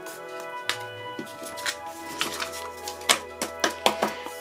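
Background music of slow, held notes over a low bass tone, with several light taps and rustles of card and paper being handled on a wooden tabletop.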